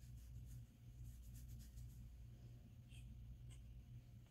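Faint scratchy rustling of fingers rubbing through coily hair and scalp, coming in several short spells, over a low steady hum.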